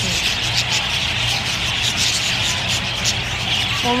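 A flock of budgerigars chattering continuously, a dense high-pitched twittering, over a steady low hum.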